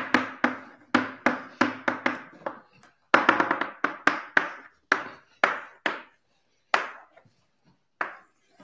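Chalk writing on a blackboard: an irregular run of sharp taps and knocks, a few each second, as the strokes and symbols of an equation are put down, with a denser flurry about three seconds in and sparser taps near the end.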